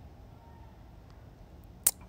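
Quiet room tone, broken near the end by a single sharp, very short click.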